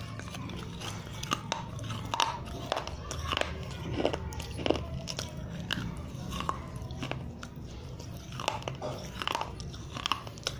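Close-up crunching and chewing of pieces of a baked clay diya (earthen lamp), with irregular crisp crunches one after another.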